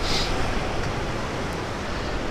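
Steady rush of ocean surf against rocks, mixed with wind.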